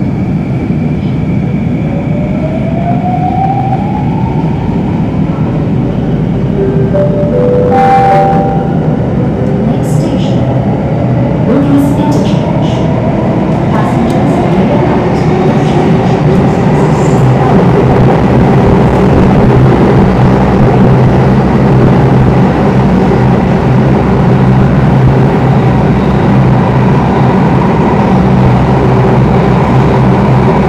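Singapore MRT electric train pulling away from a station and speeding up into the tunnel: the motors' whine rises in pitch early on, with a click about eight seconds in, then a steady running rumble and hum of wheels on rail that grows louder and levels off.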